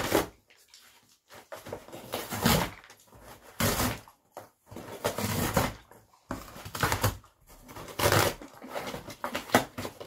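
A dog tearing and chewing a cardboard box and the paper packed inside it, in irregular bursts of ripping and crunching with short pauses.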